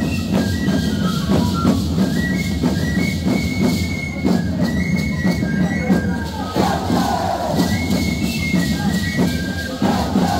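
Live Andean folk music for the Shacshas dance: a high melody line over a steady drum beat, mixed with the rattling of the dancers' seed-pod leg rattles (shacshas). Dancers or the crowd shout about two-thirds of the way through.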